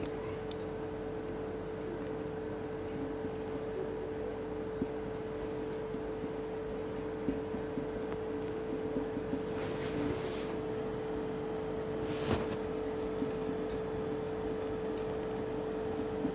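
A steady low hum of room tone, with faint marker strokes on a whiteboard; a few brief scratchy marker squeaks come around ten and twelve seconds in.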